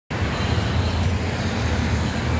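Road traffic on a busy city street: a steady low rumble of passing cars' engines and tyres.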